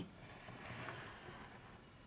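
Near silence: faint room tone, with a soft faint rustle about half a second to a second in.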